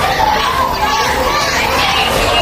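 Many children's voices calling and talking at once, loud and continuous, with no single voice standing out.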